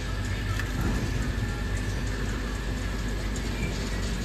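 Steady machinery noise with a constant low hum from a PVC ball production line, running evenly.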